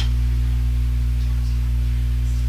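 Steady low-pitched electrical mains hum in the recording.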